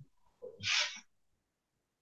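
A single short breath drawn in close to the microphone, about half a second in.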